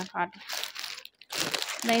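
Clear plastic garment packaging crinkling as it is handled, in two short stretches with a brief pause between.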